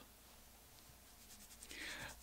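Near silence: room tone with a faint steady low hum, and a faint soft rustle in the last half second.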